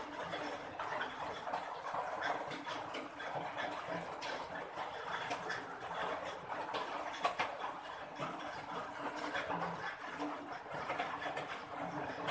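A cat eating from a tray at close range: irregular small clicks of chewing and lapping over steady background noise.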